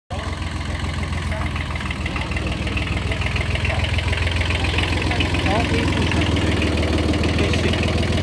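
Kubota B7001 compact tractor's small diesel engine idling steadily.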